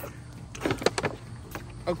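Young dromedary camels suckling milk from feeding bottles: a few short wet sucking and slurping noises in quick succession in the first second, and one more near the end.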